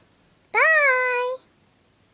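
A child's high-pitched, drawn-out vocal call, rising at first and then held on one pitch for just under a second, starting about half a second in.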